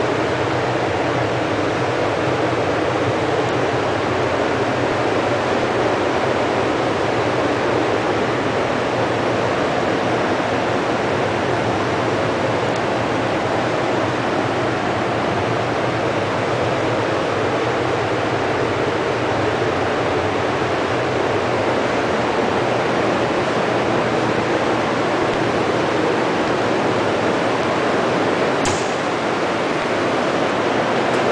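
Steady loud noise of running industrial machinery, with a low hum underneath. A single short sharp click sounds about two seconds before the end.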